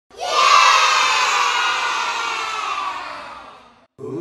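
A crowd of children cheering and shouting together. It starts loud and fades away over about three and a half seconds.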